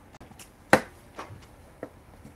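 A few short, sharp clicks and knocks, the loudest about three-quarters of a second in.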